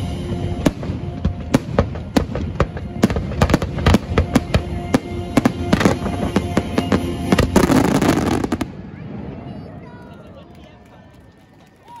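Fireworks finale: a rapid, dense barrage of aerial shells bursting, over a held note of the show's music, ending in a thick burst of crackling about eight seconds in. Then it dies away quickly.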